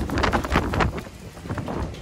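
Wind buffeting the microphone outdoors: a rough low rumble with ragged gusts in the first second, easing off after.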